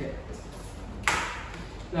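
A picture book set down into a wooden book display rack: one sharp knock about a second in, fading quickly.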